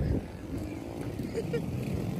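Motorcycle engines running as a low, uneven rumble, with faint voices of a crowd mixed in.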